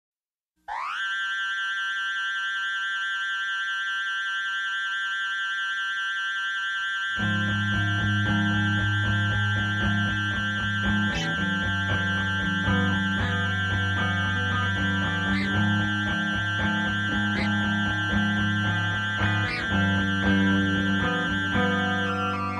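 Post-hardcore band recording opening with a single held electric guitar tone. About seven seconds in, bass and the full band come in, with accented hits about every two seconds.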